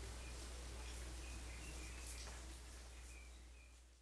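Faint background: a steady low electrical hum over hiss, with a few faint short high chirps. It all fades out near the end.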